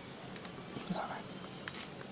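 A few faint computer keyboard and mouse clicks over low background hiss, made while code is being edited. There is a soft breathy murmur about a second in.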